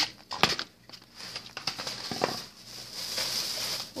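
Thin plastic shopping bag rustling and crinkling as it is handled and an item is pulled out of it, with a couple of sharp clicks in the first half-second.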